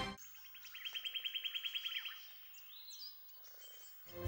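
A small bird's fast trill: an even run of short high notes, about ten a second, lasting about a second and a half, then a few fainter, higher chirps. Faint overall.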